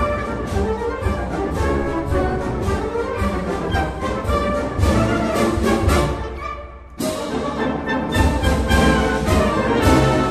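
Band music led by brass instruments, with a steady beat. It fades out about six seconds in, and a new passage starts abruptly a second later.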